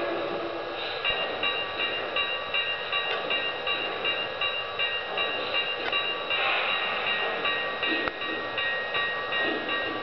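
Lionel O-gauge model steam locomotive running slowly under its own sound system: a ringing tone repeats about twice a second over the running noise of the train on the track.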